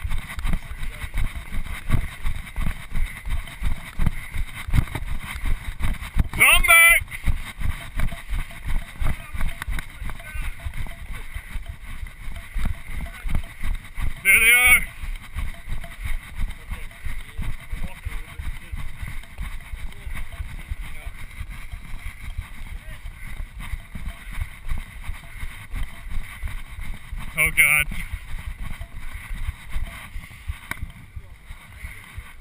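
A runner's footfalls on a dirt trail, picked up through a body-worn action camera as steady rhythmic thumps and jostling, about three a second. Three brief voice-like calls break in, about six seconds in, near the middle and near the end.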